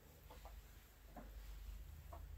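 Near silence: faint room tone with a low rumble and a few faint short sounds.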